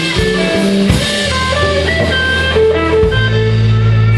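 Hollow-body electric guitar playing a blues lead line, single notes stepping up and down over a band's steady bass line.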